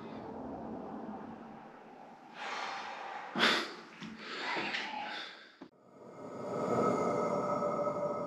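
A person breathing close to the microphone, a few loud breaths with the sharpest about three and a half seconds in. Shortly before six seconds the sound cuts off abruptly and a steady hum with faint sustained tones takes over.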